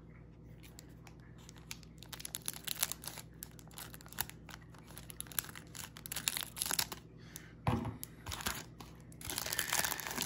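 Cellophane wrapper of a 1980 Topps football rack pack crinkling and tearing in irregular crackles as it is pulled open by hand and the stack of cards is slid out. A louder, duller bump of handling comes about three-quarters of the way through.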